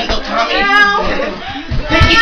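A person's high-pitched squealing cry among other loud voices. It wavers in pitch for about half a second, starting about half a second in, and a shorter cry comes near the end.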